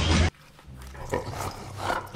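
Loud clattering from an animated scene cuts off abruptly a moment in. It gives way to faint short vocal sounds from a cartoon polar bear, Bernard, and a few light clicks.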